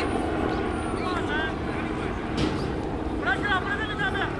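Outdoor park ambience: birds chirping in short repeated calls over a steady low rumble of wind and distant traffic.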